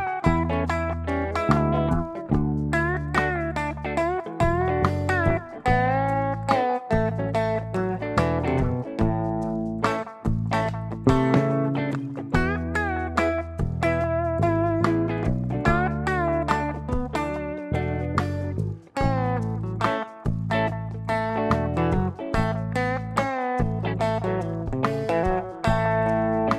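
Telecaster-style electric guitar playing A major pentatonic licks with frequent string bends over a slow groove backing track with a steady bass line, the same phrases moved up the neck as the progression goes from A to E and D.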